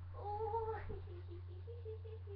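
Meowing: one long meow held for most of a second, followed by a string of short, lower mews.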